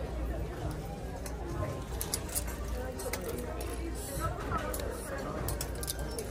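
Indistinct background chatter of shoppers, with plastic clothes hangers clicking and scraping as they are pushed along a metal clothes rack.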